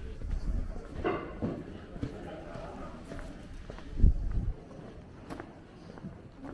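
Indistinct voices of people in an open pedestrian square, with footsteps and a few small clicks. A brief low rumble about four seconds in is the loudest sound.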